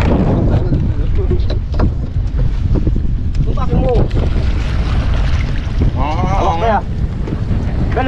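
Wind buffeting the microphone in a loud, steady low rumble while a small wooden boat is paddled on choppy water, with a few short knocks and splashes. Two brief voice calls break in, around four and six seconds in.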